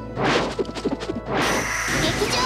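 Two swelling whoosh-and-hit sound effects, one near the start and one about a second later, for a magic staff's release and transformation, over background music.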